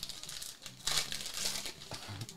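A trading card pack's wrapper being torn open and crinkled by hand, loudest about a second in.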